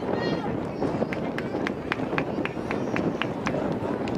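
Voices calling out on an outdoor sports field, then a run of about ten quick, evenly spaced claps, about four a second, over steady field noise.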